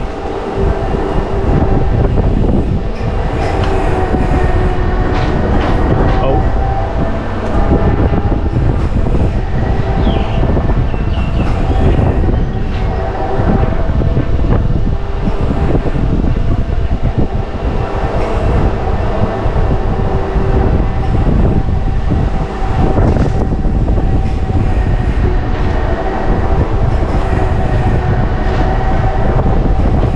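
Suspended swinging gondola ride car running along its overhead track: a steady, loud rumble with rattling from the wheels on the rail and a faint steady whine.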